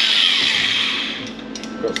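Handheld angle grinder grinding the edge of a metal plate, cleaning it up for welding; about a second in it is switched off and spins down with a falling whine.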